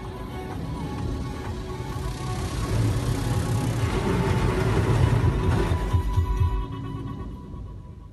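Automatic car wash heard from inside the car. Water spray and brushes beat on the windshield and body, building to a loud rush with low drumming, then falling away near the end.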